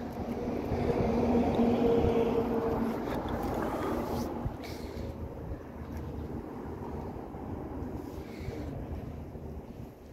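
Outdoor traffic noise: a vehicle passing, its engine hum swelling over the first few seconds and then fading to a lower steady rumble, with wind on the microphone.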